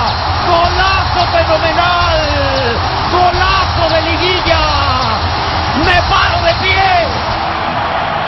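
Stadium crowd cheering after a goal, under a TV commentator's long drawn-out 'gooool' cry that wavers up and down in pitch without breaking into words.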